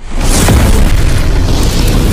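Explosion sound effect of an animated logo intro: a sudden, very loud boom that keeps rumbling at full level.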